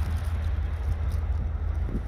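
Low, steady rumble of wind buffeting the microphone outdoors, with a faint hiss above it.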